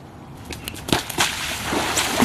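Bare feet slapping and splashing through shallow floodwater on grass, then a skimboard smacking down onto the water and skimming across it, sending up a rising rush of spray in the second half.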